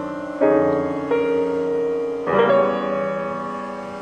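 Solo acoustic piano: three chords struck a second or so apart, each left to ring and fade before the next.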